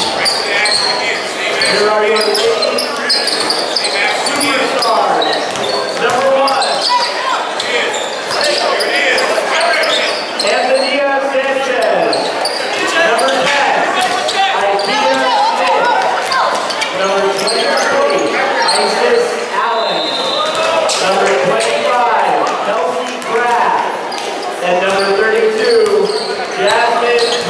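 A basketball bouncing again and again on a hard concrete court floor, under the chatter and shouts of many voices, echoing in a large hall.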